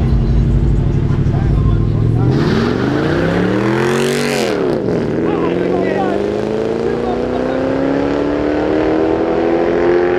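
Two Mercedes-Benz sedans launching side by side in a street drag race: engines drone low, then rev hard about two seconds in with a surge of noise, drop sharply at a gearshift near the middle, and pull away in one long, steadily rising note.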